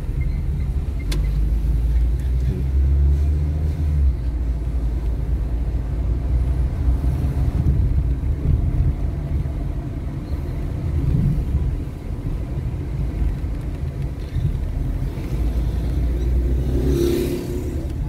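A car driving on a city street, heard from inside the cabin: a steady low rumble of engine and road noise, swelling a little at times, with a brief hiss about a second before the end.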